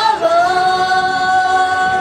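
Girls' voices singing live into microphones over a pop backing track, holding one long steady note from about a quarter-second in.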